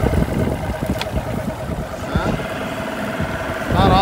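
Outboard motor running under way, a steady even whine over a dense low rumble.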